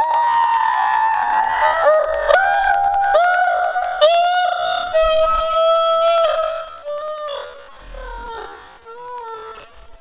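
A young man's high-pitched laugh: a long wailing 'aaaah' held for nearly two seconds, then a run of drawn-out 'hah' notes that slide gradually lower in pitch and fade near the end.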